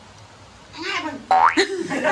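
A woman's voice: a short exclamation, then a sharply rising high-pitched squeal about one and a half seconds in, amid laughter.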